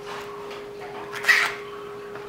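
A short call from a domestic animal, a dog or cat, just over a second in, over a steady hum.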